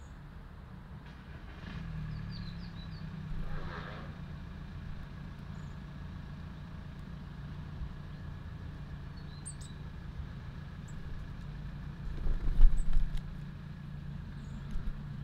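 Steady low motor rumble with a hum, the sound of distant engine traffic, under a few brief high bird chirps. A loud low thudding burst comes near the end.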